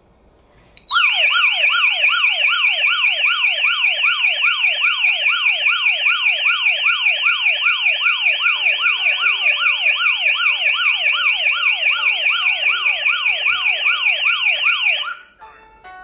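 A HOMSECUR H700 alarm panel's siren sounding a loud, rapid falling whoop, about two sweeps a second, set off by an entry alarm from the door sensor while the system is armed Away. It starts about a second in and stops suddenly near the end when the system is disarmed.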